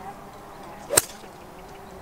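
A golf iron striking the ball off fairway turf: a single sharp, short click about halfway through.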